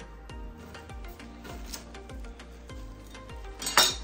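Background music with a steady beat, and one sharp clack near the end, typical of a knife striking a wooden cutting board while slicing ginger.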